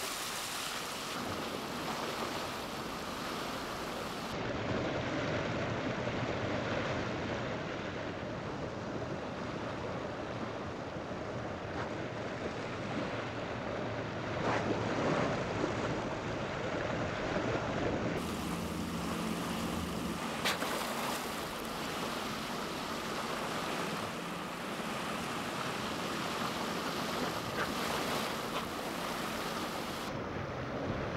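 Water rushing and splashing along the side of a moving boat as dolphins surface beside the hull, with wind buffeting the microphone. A few brief sharp splashes stand out in the middle.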